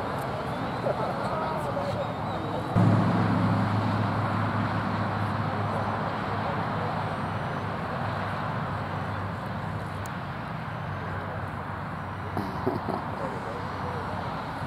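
Low, steady engine hum of a motor vehicle that starts suddenly about three seconds in and slowly fades over the following several seconds.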